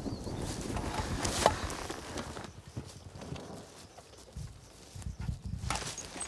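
Footsteps through tall grass, with rustling of soldiers' gear, as uneven thuds. There is a sharp click about a second and a half in.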